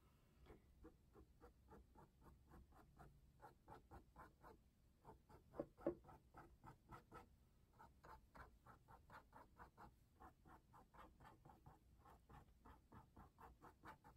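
Faint, quick strokes of a small paintbrush sweeping across canvas, about three a second, a pair of them a little louder about six seconds in.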